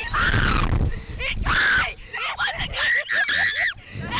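Two riders on a Slingshot thrill ride screaming and laughing: three long, high screams with bursts of laughter between them. A loud low rumble of wind buffets the microphone underneath.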